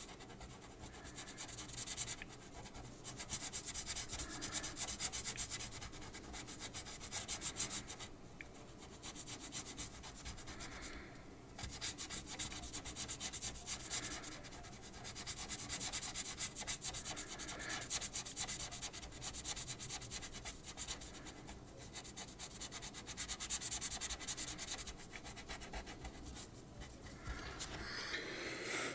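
Felt-tip pen rubbing on paper in rapid back-and-forth colouring strokes, in stretches of a few seconds with short pauses between.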